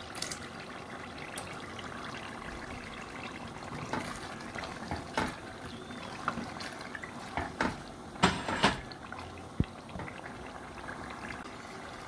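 A tomato-and-pepper stew bubbling steadily in a pot, with a few sharp knocks and clatters, the loudest a little past the middle.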